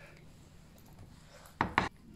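Two short, sharp clicks close together about a second and a half in, after a quiet stretch.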